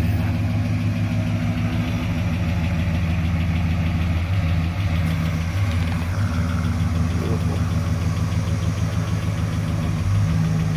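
A Plymouth Fury's engine idling steadily as the car is backed slowly into a garage.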